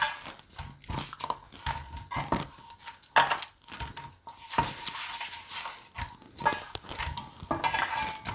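Paratha dough being kneaded by hand in a stainless steel bowl: irregular thuds and knocks of hands and dough against the bowl, with the bangles on the wrists clinking against the steel.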